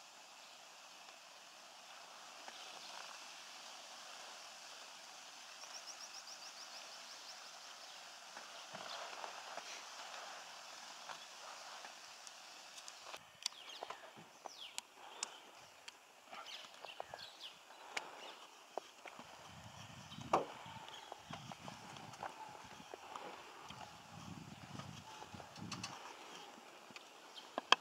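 Faint outdoor ambience by water with scattered short bird chirps and clicks, including one quick high trill about six seconds in. A few low muffled thumps and rumbles come in the last several seconds.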